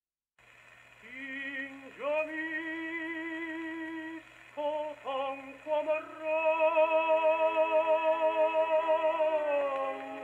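Tenor singing an operatic aria with strong vibrato, played from an unrestored 78 rpm record on an acoustic gramophone with an eight-foot papier-appliqué horn and a Columbia No 9 soundbox. The voice comes in about a second in, breaks off briefly in the middle, and then holds one long loud note near the end.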